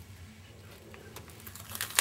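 Faint light clicks and rubbing of hands handling a cling rubber stamp on the clear acrylic lid of a stamp-positioning tool, with one sharper click near the end.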